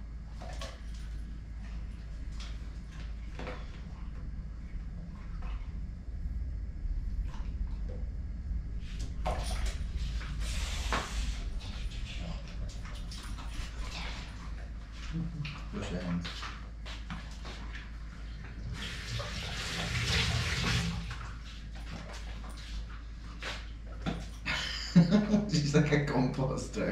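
Kitchen noise: a low steady hum under scattered light clicks and knocks, with two short rushes of hissing, water-like noise, about ten seconds in and again near twenty seconds.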